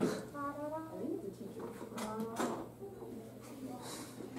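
Faint, indistinct voices in a small room, with a few short knocks or clicks near the start and again about two seconds in.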